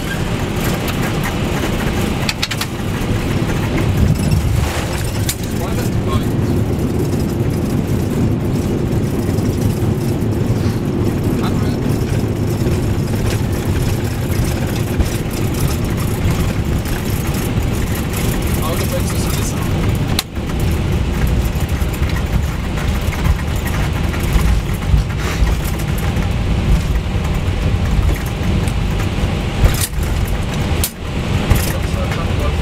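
Flight-deck noise of a McDonnell Douglas MD-11F freighter on its landing roll: a steady, loud rumble of engines, airflow and wheels on the runway, swelling in the low end about four seconds in.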